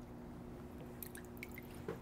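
Faint water drips, a few small ticks about a second in, over a steady low hum.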